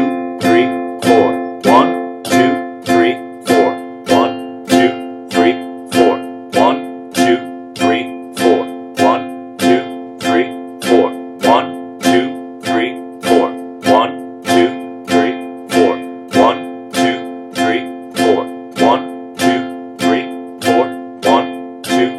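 Nylon-string classical guitar strummed steadily on a simple three-string F chord (F, A and C on the three highest strings), the same chord struck about three times every two seconds and ringing between strokes.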